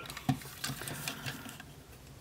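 Faint clicks and taps of hard plastic as hands handle a G1 Transformers Hardhead toy figure and stand it upright on a surface.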